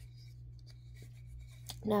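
Faint light rubbing and a few soft ticks from a small wooden birdhouse being handled and turned in the hands, over a steady low hum. A woman starts speaking near the end.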